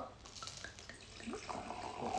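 Red wine being poured from a bottle into a wine glass: a faint liquid trickle and splash.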